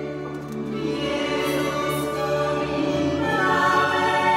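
Live folk music: women's voices singing together over violins. The singing grows louder and higher about three seconds in.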